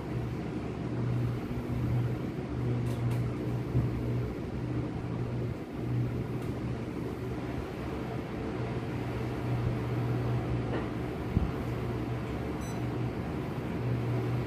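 Split-type inverter air conditioner indoor unit running: a steady fan hum with a low drone that dips out briefly a few times, and a faint short beep near the end.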